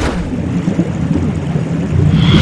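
A loud, steady low rumble that begins abruptly, the opening of an edited intro soundtrack.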